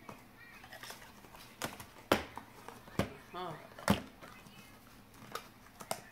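Hard plastic clicks and knocks from a camera battery and travel charger being handled and fitted back into their cardboard box: three sharp clicks about a second apart, with fainter handling ticks between.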